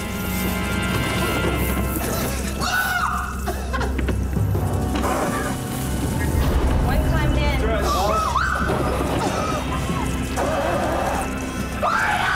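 A woman squealing and whimpering in fright in several bursts, about three seconds in, through the middle and again near the end, over tense television background music with a low, steady drone.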